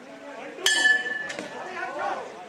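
Boxing ring bell struck about two-thirds of a second in, ringing briefly with a second strike about half a second later: the bell ending the round. Crowd voices carry on beneath it.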